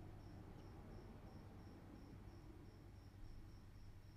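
Near silence: room tone with a low steady hum and a faint high chirp repeating about three times a second.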